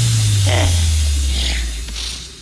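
A sustained electronic bass note from a techno track, sliding slowly down in pitch and fading near the end, with the drums dropped out. Faint snippets of a sampled voice sit over it.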